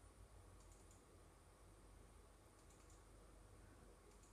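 Near silence: room tone with a low hum and a few faint clicks of a computer mouse.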